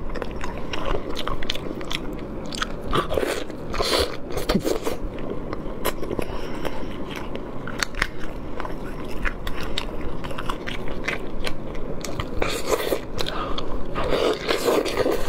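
Close-miked mouth sounds of a person biting and chewing braised fatty pork belly with its skin on, with many short, irregular clicks and smacks throughout.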